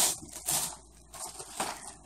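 Gift wrapping crinkling and rustling in a few short, irregular bursts as a small present is unwrapped by hand.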